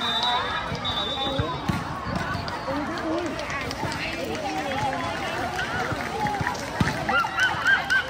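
Many young voices talking and calling over one another, with a cluster of short, high-pitched shouts near the end.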